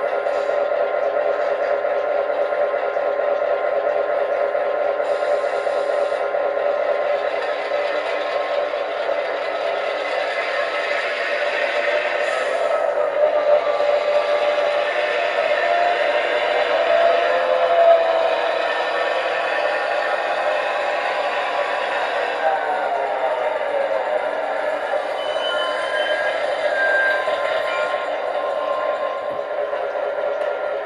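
Sound decoder in a large-scale model GP9 locomotive playing a diesel engine sound through its speaker as the loco runs. The engine note is steady, rising and falling in pitch a few times as it changes throttle.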